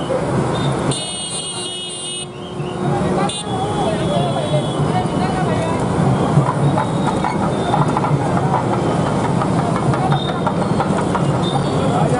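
Crowd of a street procession: many voices mixed with a dense clatter. A brief high, horn-like toot sounds about a second in and lasts about a second.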